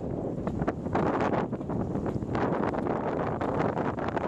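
Wind buffeting the microphone on the foredeck of a sailboat under sail: a steady low rush broken by frequent, irregular gusts.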